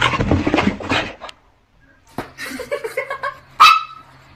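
A small dog giving short calls, then one loud, sharp, high yip near the end.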